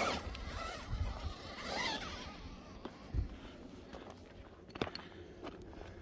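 Faint scraping and rustling over stony ground, with scattered small clicks and a couple of low bumps about one and three seconds in.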